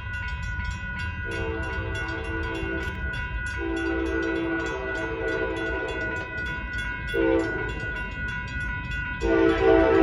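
A train horn sounds the grade-crossing signal of two long blasts, one short and a long one starting near the end, as the train approaches. Under it the crossing bell rings steadily with quick, even strikes.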